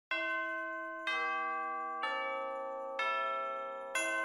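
Intro jingle of four bell tones struck about a second apart, each ringing on and slowly fading. Each tone is lower in pitch than the one before.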